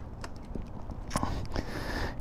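A few light clicks and knocks from a gloved hand working the key and switches on a Can-Am Spyder RT's dash and handlebar controls, over a low steady rumble.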